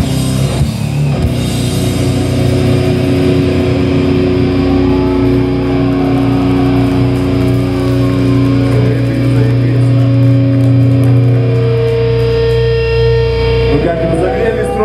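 Live hardcore band's distorted electric guitars and bass holding long, ringing chords after the drums drop out about a second in, changing chord a few times.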